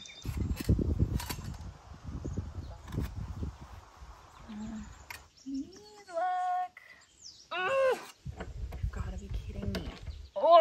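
A new muffler being pushed and twisted onto a Royal Enfield's exhaust pipe: low rubbing and knocking of metal on metal, heaviest in the first few seconds and again near the end, as the tight slip-fit resists. Short strained vocal noises of effort come in the middle.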